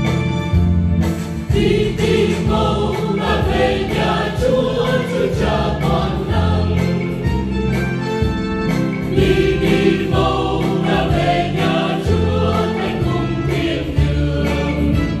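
Church choir singing a Vietnamese Catholic hymn with instrumental accompaniment; the voices come in about a second in, after the instrumental introduction.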